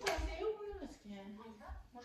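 A person speaking, then holding a steady voiced sound, heard through a television's speaker.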